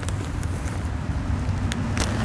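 A plastic zip-top bag being pressed shut by hand, faint under a steady low outdoor rumble.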